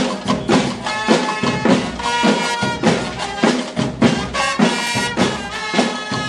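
School marching band drum line playing a steady marching beat on snare-type drums, about two strokes a second. About a second in, a melody on pitched instruments joins the drums.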